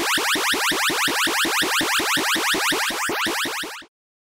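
Electronic sound effect: a rapid run of short rising chirps, about eight a second, that stops abruptly shortly before the end.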